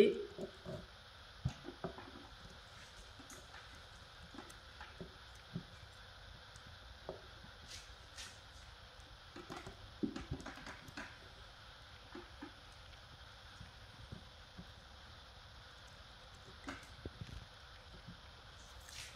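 Knife and fork working through a block of morbier cheese on a wooden board: scattered soft clicks and taps as the blade and fork meet the board, a small cluster about ten seconds in.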